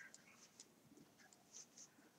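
Near silence with faint, short scratchy ticks from a crochet hook drawing yarn through stitches.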